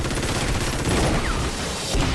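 A sudden, dense volley of automatic gunfire, the shots too rapid to count, with bullets striking a van.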